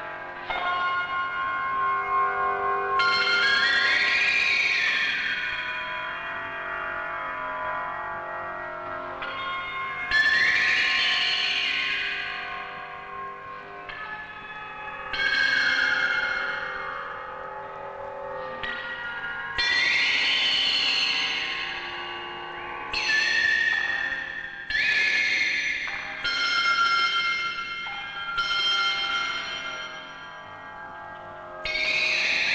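Electronic background music: sustained, echoing tones with swells that start suddenly and glide up and then down in pitch every few seconds, coming closer together near the end.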